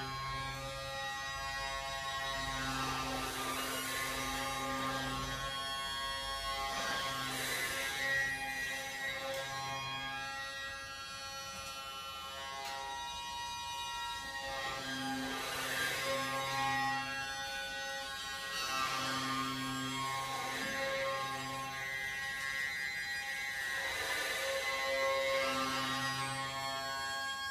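Hurdy-gurdy playing steady drones under changing lower notes, with a rough accent every few seconds.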